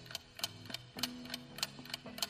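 Ticking clock sound effect of a quiz countdown timer, about three ticks a second, over faint steady tones.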